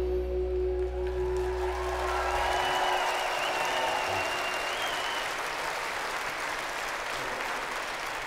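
A rock band's last sustained chord rings out and dies away in the first few seconds while a large crowd applauds and cheers. A long high whistle rises over the applause for a few seconds.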